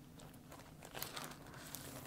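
Faint rustling and crinkling of a record's inner sleeve as a vinyl LP is slid out of it and its jacket, with a few light clicks, busier in the second half.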